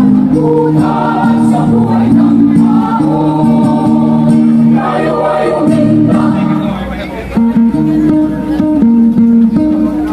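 Mixed choir of men and women singing in sustained, held chords.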